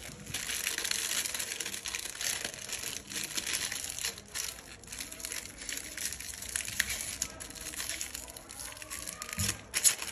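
Crinkly plastic wrapper of a Yums Sour candy packet being handled and torn open, a dense run of crackles and sharp clicks, with one louder crackle just before the end.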